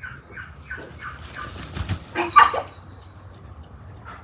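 Chickens clucking in a run of short, evenly repeated calls, then a louder, denser burst of sound a little after two seconds in.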